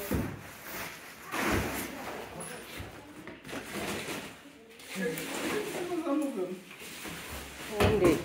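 Knocks and rustling of packaging as a leather recliner is unwrapped and shifted about, with cardboard and plastic wrapping being handled; a few low voices are heard in the middle.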